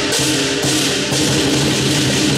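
Southern lion dance percussion band: drum, gong and crash cymbals played together, loud and continuous. The cymbals clash about twice a second over the gong's steady ringing.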